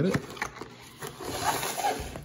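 Clear plastic sleeve of a pin card scraping and rustling against a cardboard mailer box as it is lifted out, with a few light clicks of handling.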